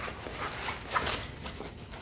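Soft rustling and handling noise of a rolled diamond-painting canvas and its covering as a foam roller is slid out from inside it, in faint, irregular short scrapes.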